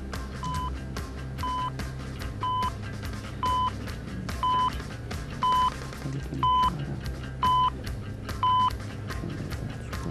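Quiz-show countdown timer: nine short high beeps, one a second, over background music with a steady beat, counting down the time left to answer. The later beeps are louder.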